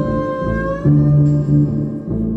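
Slim electric upright string instrument played with a bow: repeated low bowed notes, a new stroke starting just under a second in. A higher sustained note sounds over them in the first half, sliding slightly upward.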